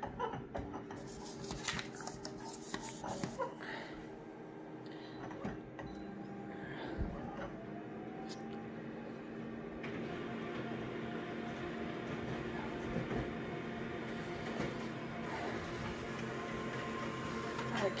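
Colour office photocopier running through a copy job: a steady machine hum with a few clicks as it scans the original, growing slightly louder about ten seconds in as it prints.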